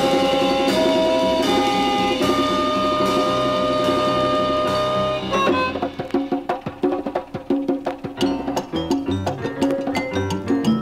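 Latin jazz quintet playing live: long held notes for about the first five seconds, then a quick hand-drum and percussion rhythm on congas, bongos and drum kit takes over.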